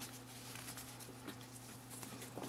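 Faint rustling of a braided rope handled in the hands as a knot is worked loose, over a steady low electrical hum.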